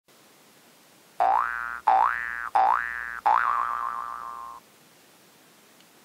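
Cartoon-style 'boing' sound effect played four times in quick succession, starting about a second in: each tone slides quickly upward in pitch, and the last one ends in a wobbling pitch that fades out.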